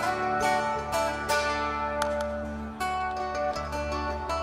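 Acoustic guitar picked in a quiet instrumental passage of a live band, its notes ringing over a sustained low note.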